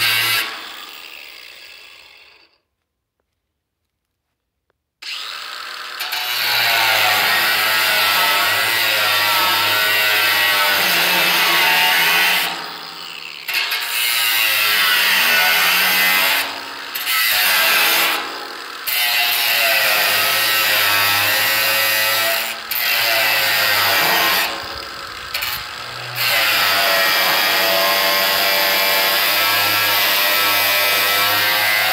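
Cordless angle grinder working against the steel lid of a metal drum: it winds down and stops just after the start, stays silent for a couple of seconds, then starts again and runs loud with a shifting whine, easing off briefly several times as the disc bites the metal.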